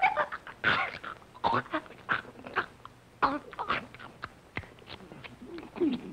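Cartoon donkey braying, voiced by a performer: a run of short, uneven cries.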